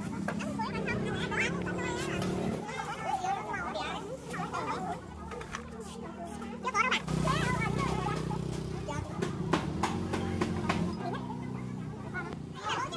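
Several people talking, mostly overlapping chatter, over background music with held low notes, plus a few short clicks and rustles near the end.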